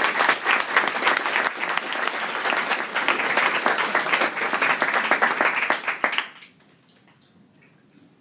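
An audience applauding, many hands clapping at once, which fades out about six seconds in.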